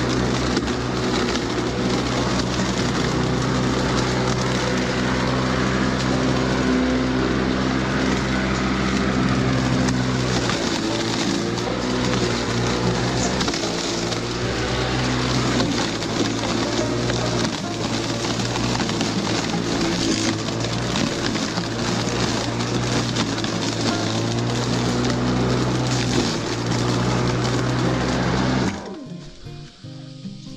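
Makita cordless lawn mower running: a steady electric motor whine with the blade cutting dry grass. It cuts off suddenly near the end.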